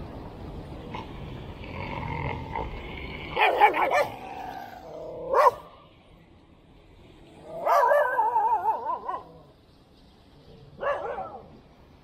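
Siberian husky vocalising in four wavering, pitch-warbling calls. Two short calls come a few seconds in, a longer one of about a second and a half falls in the middle, and a short one comes near the end.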